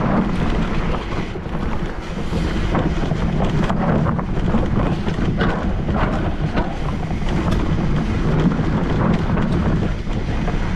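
Wind buffeting the microphone of a mountain bike's handlebar camera while the bike runs fast down a dirt forest trail, its tyres on the dirt and frame clattering with frequent short knocks and rattles over the bumps.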